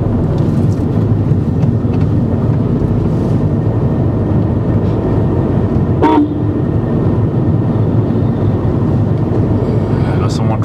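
Steady road and engine rumble inside a moving car's cabin, with a short vehicle horn toot about six seconds in.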